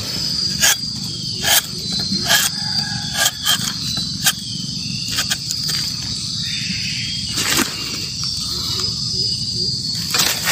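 Insects chirring steadily in a high band of several tones, with scattered sharp clicks and rustles close by.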